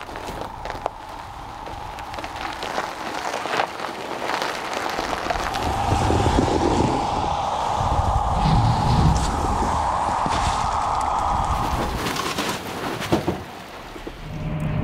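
Tesla Cybertruck moving off slowly with a heavy trailer over packed snow: tyres crunching and rumbling, over a steady whine that gets louder about halfway through.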